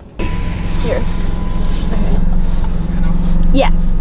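Car running, heard inside the cabin: a steady low hum that comes in suddenly just after the start and holds.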